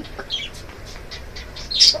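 Pump-mist bottle of makeup setting spray being spritzed in short hissing bursts, a faint one early and a louder one near the end.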